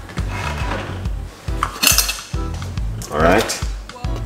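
Clatter of kitchenware off camera: a sharp clink about halfway through and a louder scraping rattle near the end. Background music with a steady bass beat runs under it.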